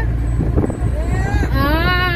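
Steady low rumble of a moving van's engine and road noise, heard from inside its rear passenger compartment, with a person's voice over it in the second half.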